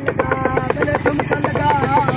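A man's voice singing a wavering line over a fast, even pulsing beat of about six or seven pulses a second.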